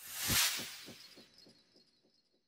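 A whoosh sound effect that swells to a peak about half a second in. It then dies away in a trail of quick, evenly spaced echoing pulses, about seven a second, and is gone within a second and a half.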